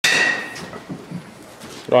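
Metal baseball bat struck once, giving a high ringing ping that fades within about half a second, followed by a few faint soft knocks.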